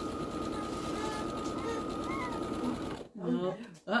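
Brother electric sewing machine running steadily, stitching a scant quarter-inch seam through fabric, then stopping abruptly about three seconds in.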